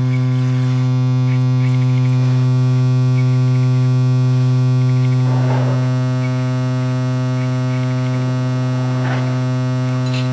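A loud, steady low electronic drone with a stack of overtones, from a live drums-and-electronics improvisation. A couple of brief noisy swells rise over it, about halfway through and again near the end.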